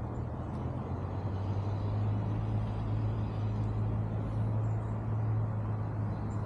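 A steady low engine hum that grows a little louder about a second in and then holds, over a background of outdoor noise.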